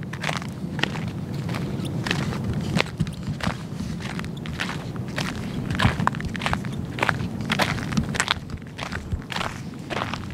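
Footsteps on a gravel dirt road at a walking pace, each step a short scuff of grit, about one to two a second.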